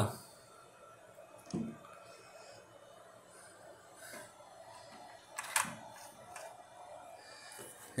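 Quiet room with a few faint, short handling noises, including a sharper click about five and a half seconds in.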